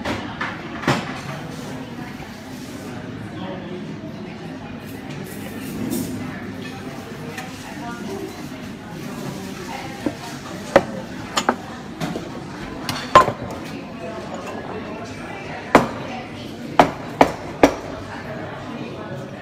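Café background of indistinct voices, with sharp clinks and knocks of cups, saucers and a metal milk pitcher, about ten of them, mostly in the second half.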